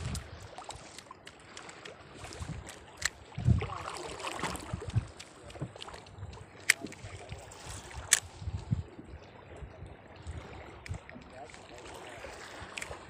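Water slapping and lapping against the hull of a small wooden fishing boat drifting at sea, with low thuds and a few sharp clicks and knocks from the boat and rods.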